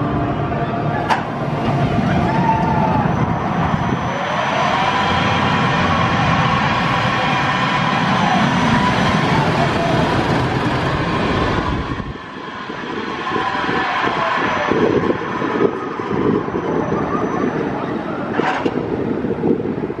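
Intamin Motocoaster train running along its steel track, a loud rolling rumble with whining tones that glide up and down, dropping away suddenly about twelve seconds in. A sharp click about a second in and another near the end.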